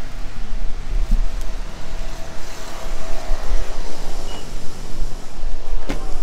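A motor vehicle engine running close by, growing a little louder about halfway through, under a steady street noise, with wind buffeting the microphone.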